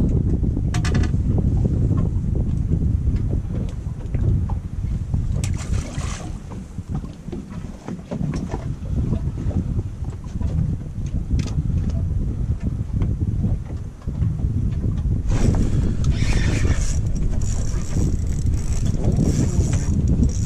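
Wind buffeting the microphone on an open boat: a dense, low rumble that rises and falls. A few brief higher-pitched noises break through, the longest in the last few seconds.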